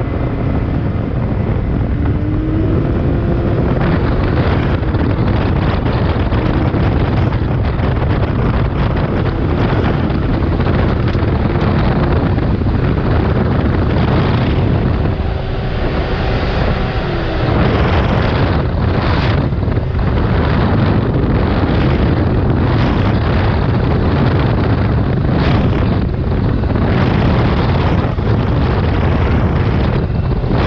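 Can-Am Maverick X3 Turbo side-by-side running at speed on a dirt road: a steady engine drone under heavy wind buffeting on the microphone. From about halfway through come repeated short knocks and rattles as the machine jolts over the rough surface.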